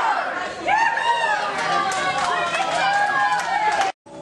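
A crowd of young people cheering and shouting at once, many voices overlapping, cutting off suddenly near the end.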